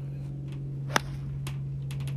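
A single sharp crack about a second in: a golf iron striking the ball on a tee shot.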